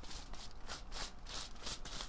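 Tint brush stroking bleach onto hair laid over foil, a rapid papery rustle of about four strokes a second.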